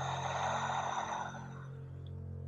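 A long, breathy exhale that fades out over about a second and a half, over soft, sustained background music.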